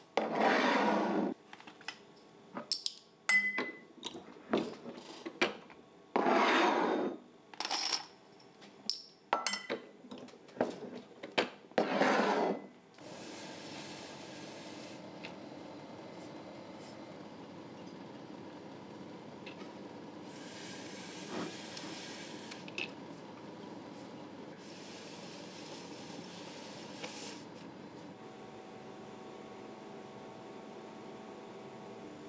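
Glass beer bottles being handled on a bench, clinking, with three loud rasping sounds about a second long at roughly six-second intervals. From about halfway, a steady low hum takes over, with a few longer stretches of hiss.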